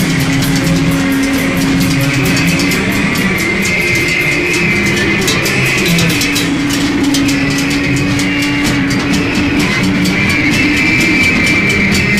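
A rock band playing live, loud: electric guitars hold long sustained notes over bass and drums, the chord changing every few seconds.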